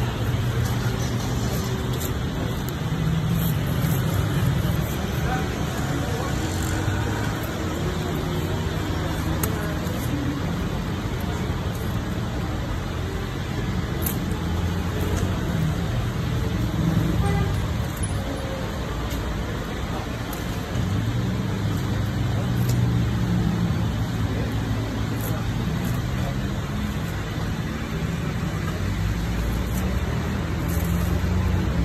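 Steady street traffic noise, with vehicle engines running close by, and indistinct voices under it.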